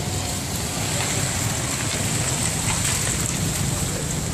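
Steady outdoor street noise: an even hiss over a low rumble, with no clear voice or tune.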